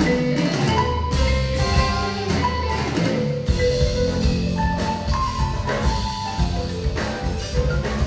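Live progressive rock band playing an instrumental, with marimba, keyboards and electric guitars carrying busy melodic lines over a drum kit and low bass notes.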